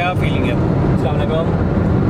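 Steady low rumble of engine and road noise inside the cabin of a moving Honda BR-V.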